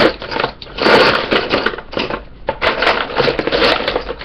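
Wooden colored pencils rattling and clattering against each other and a plastic caddy as a hand rummages through them, with a brief lull a little past the middle.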